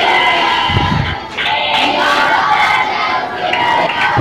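A large group of children's voices shouting and cheering together, many at once.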